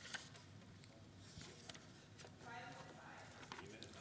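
Near silence: room tone with a few faint clicks and a brief faint murmur of a voice about two and a half seconds in.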